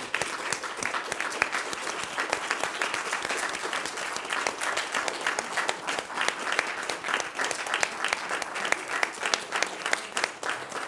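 A small group of people applauding together, many hands clapping steadily in a standing ovation.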